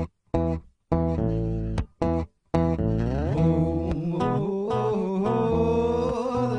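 Electric guitar music played back through a loop station, with layered parts. It cuts out suddenly several times in the first two and a half seconds, then plays on steadily.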